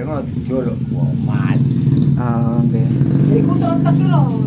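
A man talking, over the steady low hum of a motorcycle engine idling.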